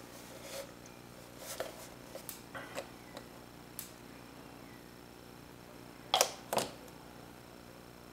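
Light clicks and taps from handling a plastic model-kit hull, with two sharper clicks close together about six seconds in.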